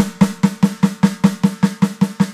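Electronic snare sound from a Roland TD-17 drum module, struck in an even run of about five hits a second with a steady ring under the hits. The module's Jazz Club room ambience is on, but the room effect is hard to hear.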